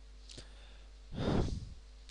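A single audible breath, like a sigh, from a man into a close microphone a little over a second in, over a faint steady electrical hum.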